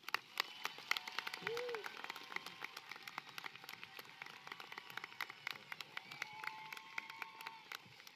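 Audience applauding, a dense patter of many hands clapping, with a brief laugh about a second and a half in.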